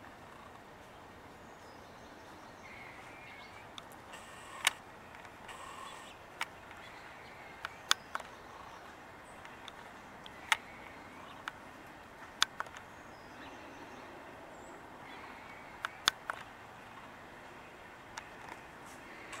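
Scattered sharp clicks, about a dozen, irregularly spaced over quiet outdoor ambience, with faint bird calls now and then.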